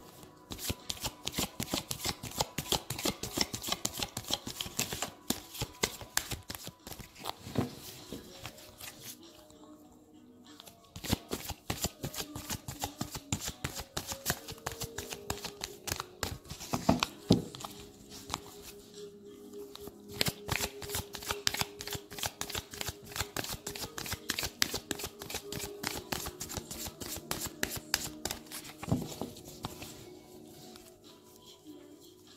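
A deck of angel oracle cards being shuffled by hand: a long, rapid run of card clicks that pauses briefly about ten and nineteen seconds in, over soft background music.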